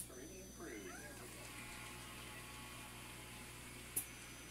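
Game-show sound from a television: a brief high, arching vocal sound in the first second, then studio audience applause as an even wash of clapping.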